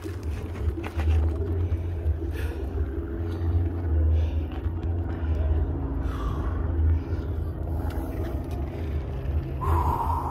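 Uneven low rumble of wind on the microphone and knobby mountain-bike tyres rolling along a hard path while riding.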